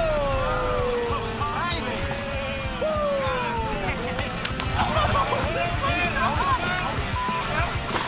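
Several men cheering and whooping with long, falling yells over background music.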